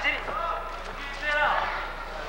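A man's voice speaking in short spells over the broadcast background, with a steady low hum underneath.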